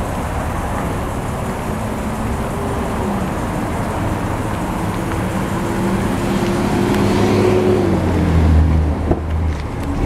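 A V8 truck engine idling steadily, growing louder toward the end with a deeper rumble in the last two seconds.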